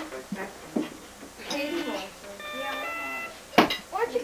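An electronic toy with coloured push-button pads sounding a few held electronic beeps in turn, each at a different pitch, as its buttons are pressed. A sharp knock comes near the end.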